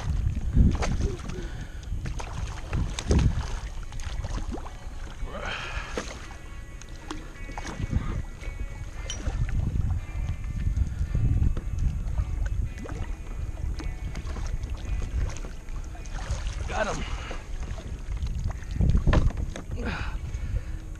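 Splashing of a hooked redfish thrashing at the surface beside a kayak, heard over steady wind rumble on the head-mounted camera's microphone, with a few sharp knocks.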